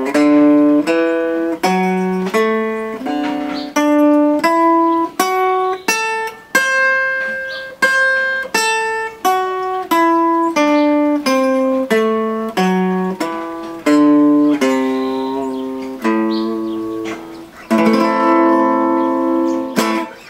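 Clean archtop hollowbody guitar playing the A minor 6 pentatonic scale (A, C, D, E, F♯) one picked note at a time, running up and back down the shape at about two to three notes a second. Near the end several notes ring together.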